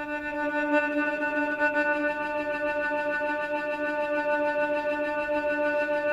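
Native Instruments Straylight granular synthesizer holding one steady pitched tone with a stack of overtones, played from a narrowed slice of a recording. The tone has a fast, even grain flutter and swells in over the first half second.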